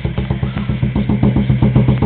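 Wooden xylophone played in a fast roll, about ten strokes a second, holding low ringing notes and growing slightly louder.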